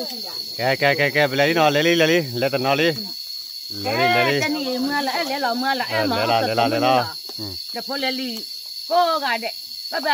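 People talking in short stretches with pauses between, over a steady high-pitched buzz of insects.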